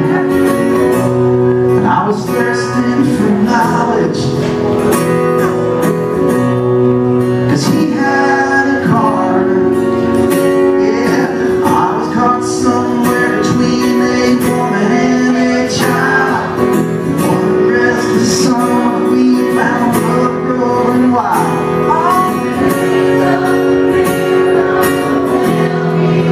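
A male singer sings a song live into a handheld microphone over an instrumental accompaniment of sustained chords.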